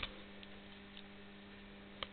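Faint steady mains hum from the magnetic chokes (ballasts) of running fluorescent tubes and mercury-vapour lamps, one low steady tone with fainter overtones above it. A couple of very faint ticks sound in the first second.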